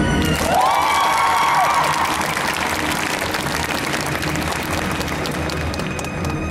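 Audience applauding in an ice-rink arena as the program music drops to a quiet passage. A brief pitched sound rises and falls early on.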